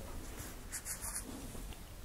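Faint scratching strokes of writing or drawing on a board, in a short run about a second in, over a low steady room hum.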